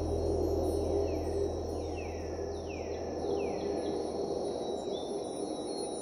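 Night ambience: a steady high insect trill with a repeating falling chirp about every half second, over a low hum that fades in the second half.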